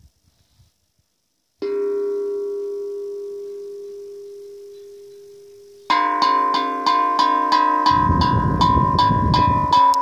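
A Hang (steel handpan) struck once about one and a half seconds in, a single note ringing and slowly fading for about four seconds. Then it is patted rapidly, about four notes a second, with a low rumble underneath in the last couple of seconds.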